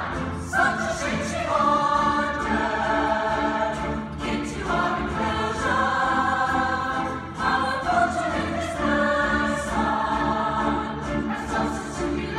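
A stage-musical ensemble singing in chorus with musical accompaniment: long held notes in phrases of two to three seconds, each broken by a short pause.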